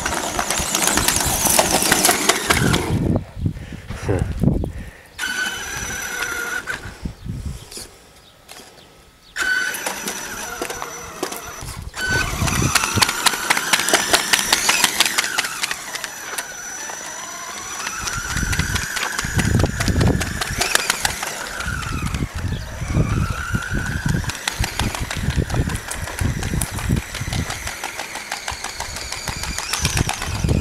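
Electric Traxxas E-Revo RC truck driving, its motor whining up and down in pitch with the throttle, over a fast rattle from the drivetrain and a shredded tyre. The motor goes quiet twice in the first ten seconds.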